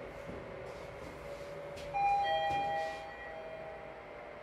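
Lift arrival chime: a single electronic ding of falling tones about two seconds in, lasting about a second.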